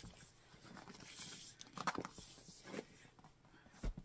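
Faint handling noise of a cardboard box being turned over in the hands: a few soft scrapes and taps, with a louder knock near the end.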